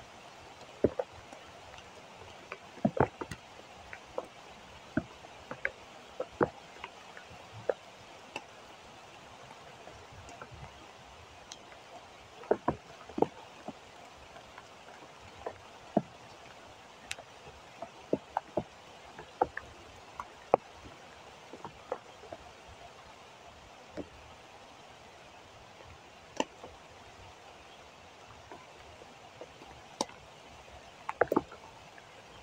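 Steady rain hiss, with irregular sharp taps of raindrops striking close to the microphone.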